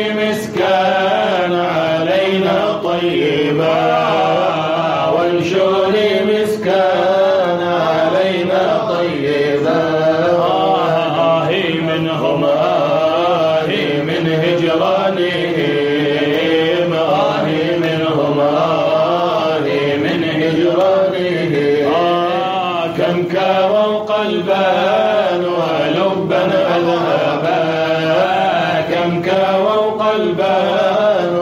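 A group of voices singing a Sufi devotional poem (qasida) together, chant-like and unaccompanied, the melody rising and falling in long continuous lines.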